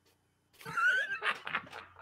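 A man laughing: a high squealing rise about half a second in, then a run of short breathy bursts, about four a second.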